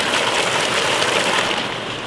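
Hot spring water pouring over rocks in a steady rush.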